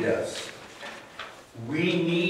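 Voices singing a slow hymn (a short prayer song) with long held notes: one sung phrase fades out just after the start and the next begins about a second and a half in.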